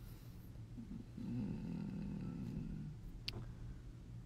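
A young man's low, closed-mouth hum, a drawn-out wavering "mmm" of about two seconds while he decides, over a steady low background hum. A single sharp click comes near the end.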